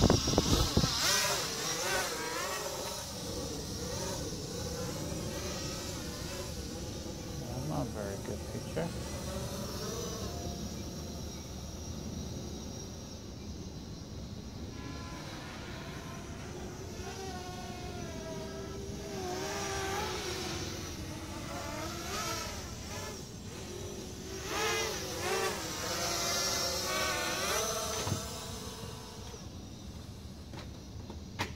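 Blade 200QX quadcopter's small electric motors whirring. Their pitch wavers up and down continuously, with a loud start and louder stretches near the middle and again near the end.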